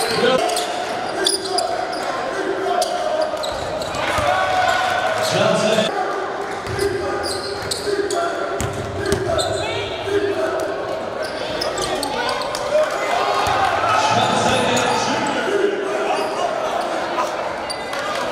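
Live sound of a basketball game in a gym: the ball bouncing on the hardwood court among the voices of players and spectators, echoing in the large hall.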